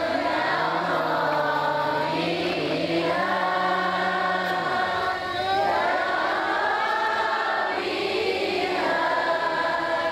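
A man chanting a closing Arabic prayer (doa) in long, melodic, drawn-out phrases, with short breaths between phrases about two, five and eight seconds in.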